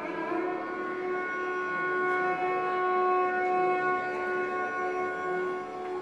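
Carnatic violin bowing one long, steady note that is held for about five seconds before fading near the end.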